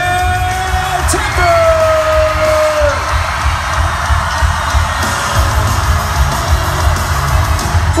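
Loud arena concert music with a heavy bass beat, over a screaming crowd. One long held shout carries over the first three seconds.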